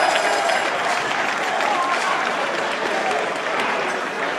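Studio audience applauding steadily after a correct answer is confirmed, with a few voices in the crowd.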